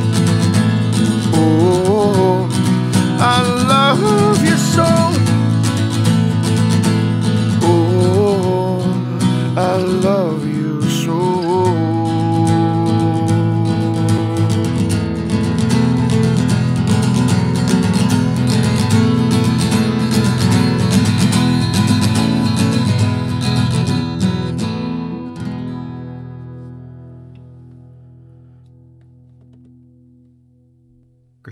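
Acoustic guitar strumming the close of a song, with a few wordless sung phrases in the first half, then ending on a final chord that rings and fades away over the last five seconds.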